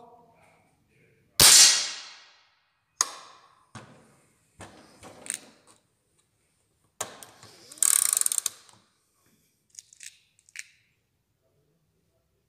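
An air rifle shot about a second and a half in, ringing on briefly, then a second sharp crack and a run of small metallic clicks and clatter, with a louder rattling burst past the middle.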